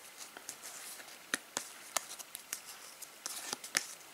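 Stack of Topps Match Attax trading cards being flicked through by hand, one card slid behind the next: soft slides and light clicks of card against card at uneven moments, with the sharpest ticks in the second half.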